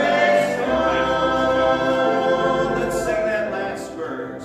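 A congregation singing a hymn together, the voices holding long notes that change about once a second.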